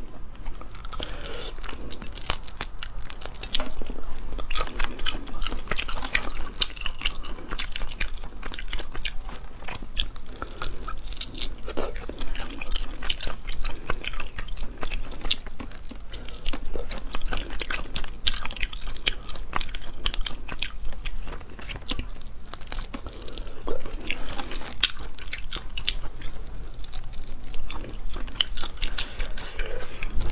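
Close-miked chewing and biting of spicy crayfish tails, a dense run of wet mouth clicks and smacks.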